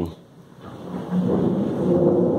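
Portable electric cooler's fan starting up as it is powered: a rushing noise with a low hum that builds over about a second and then runs steadily.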